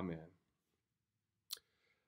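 A spoken 'Amen' right at the start, then near silence in a small room, broken once, about a second and a half in, by a single short click.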